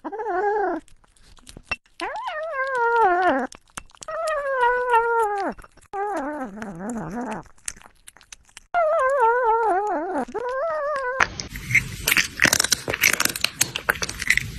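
A series of five drawn-out animal cries, each wavering in pitch and falling away at the end, like a whine or howl. About 11 seconds in, it gives way abruptly to a loud, crackly, clattering noise.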